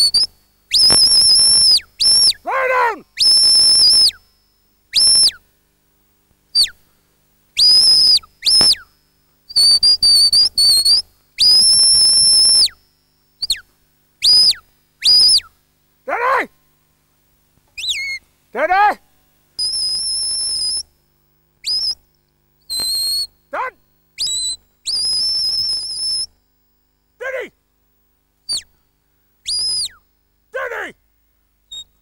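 A shepherd whistling commands to a working sheepdog: a long series of shrill, high, steady whistle blasts, some short and some held for a second or more, several bending up or down in pitch at the ends, with silent gaps between them. A few shorter notes slide steeply down in pitch among the blasts.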